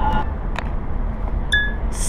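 Steady low rumble of car cabin noise inside a car, with a single sharp click about half a second in and a short high beep about a second and a half in.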